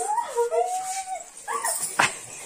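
A young woman's wordless, high-pitched whining cries, drawn out and gliding in pitch, as she strains while wrestling, ending with a short sharp noise.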